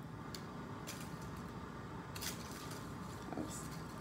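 Quiet, steady room hum with three faint light clicks as the hanging electromagnet and its wires are handled.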